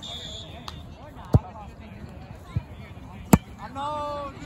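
A volleyball being struck by hand: two sharp smacks about two seconds apart, with a softer hit between them.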